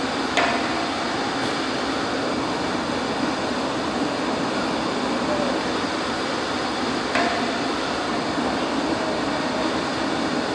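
Steady fan-like room noise, with two short knocks about half a second in and about seven seconds in as the ultrasonic gauge's probe is handled against the steel halon cylinder.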